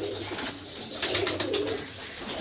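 Domestic pigeons cooing in a loft: a low, steady coo with scattered faint clicks.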